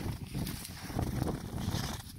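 Footsteps in snow, soft irregular thuds, over a low rumble of wind on the microphone.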